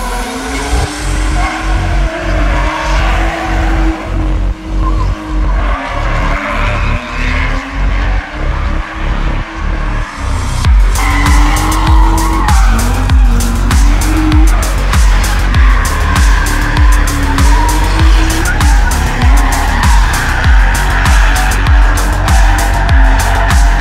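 BMW E36 drift car sliding with tyre squeal, its engine revving up and down as it holds the slide, over background music with a steady beat that grows louder about halfway through.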